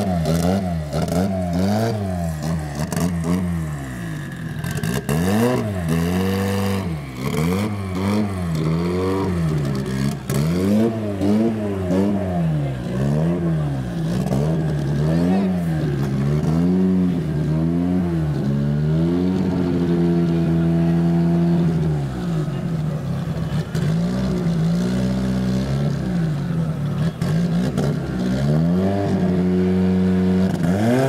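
Cosworth-badged Ford Escort drag car's engine being blipped up and down about once a second as it sits at the start line. The revs are held steady for a couple of seconds about two-thirds of the way in, then blipped again and held higher near the end, ahead of the launch.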